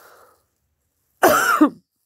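A person coughs once, a short loud cough a little over a second in.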